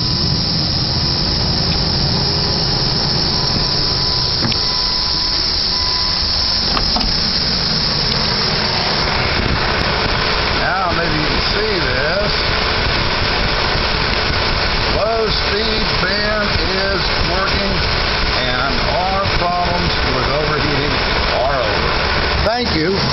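2006 PT Cruiser's electric radiator cooling fan running steadily, a loud even rush of air, switched on with the ignition key through newly added direct power and ground wiring.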